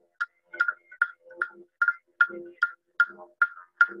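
Clapsticks struck in a steady beat, about two and a half strikes a second, each strike a sharp wooden click. A man's chanting voice sings between the strikes, accompanying an Aboriginal dance.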